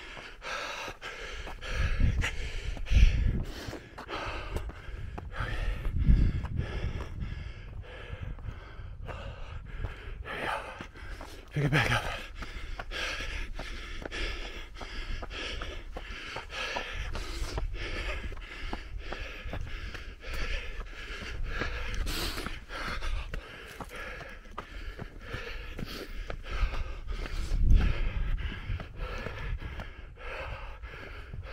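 A runner breathing hard and panting while climbing a steep trail, with steady footsteps on dirt and rock and a few louder low thumps.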